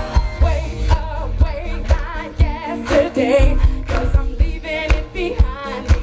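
Live Christian pop band playing, with a woman singing lead over drums and bass. It is recorded from within the audience, so it sounds loud and roomy.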